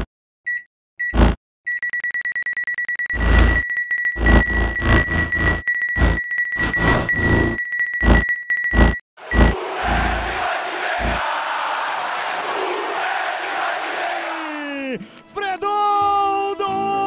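Sound-designed intro for a digital countdown: short electronic beeps, then a steady high beep with fast even ticking, cut by heavy booming hits. About ten seconds in it gives way to a dense rush of noise that drops away in a falling sweep, and music starts near the end.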